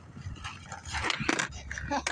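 A skateboard's deck and wheels clacking several times on concrete about a second in as a flat-ground trick is landed and ridden away. A short high-pitched call comes right at the end.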